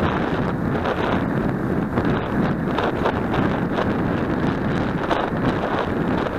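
Steady wind noise buffeting the microphone of a bicycle-mounted camera as it rides along.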